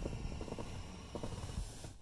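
FM radio static hissing from the car stereo's speakers on an empty frequency, with faint clicks as a plug-in FM transmitter is fitted to the phone. The hiss cuts out just before the end as the transmitter's carrier takes over the station, and a low rumble stays underneath.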